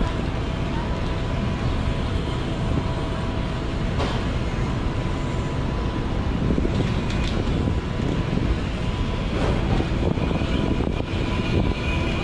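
City street traffic: a steady rumble of passing vehicles, with a faint, thin steady tone running through most of it and a few short clicks.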